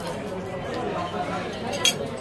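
Indistinct chatter of diners in a busy restaurant. Near the end comes a single sharp clink of tableware.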